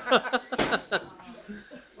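People laughing and chuckling, dying down about a second in.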